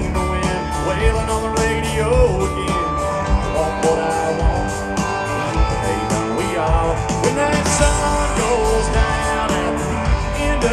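Live country band playing through a PA: electric guitars over drums and bass, with a sung lead vocal line.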